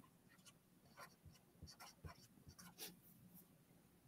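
Near silence with faint, scattered scratches of a pen drawing on paper.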